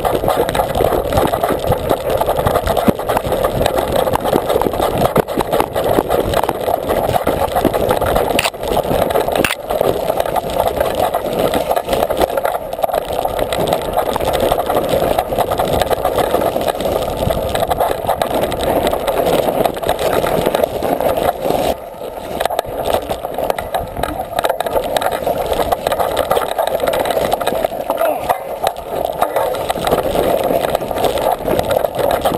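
Mountain bike riding down a rough, rocky dirt trail, heard from a camera mounted on the bike: a continuous rumble and rattle of tyres and frame over the ground, dotted with many small knocks. It eases briefly about two-thirds of the way through.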